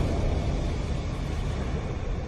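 Deep rumbling sound effect of an animated logo reveal, slowly fading away.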